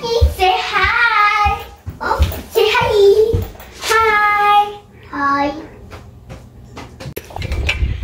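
A young child's high, sing-song voice in four drawn-out vocal phrases, the last one short, then a few soft taps in a quieter stretch.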